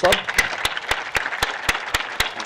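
A crowd of men applauding, clapping together in a steady rhythm of about four claps a second.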